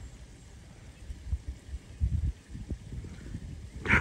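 Low, uneven rumbling and soft thumps picked up by the microphone over a faint outdoor hiss, starting about a second in and loudest around two seconds.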